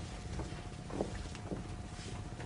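Steady background noise of an old television soundtrack: a low rumble and a faint constant hum, with a few faint short sounds about half a second apart.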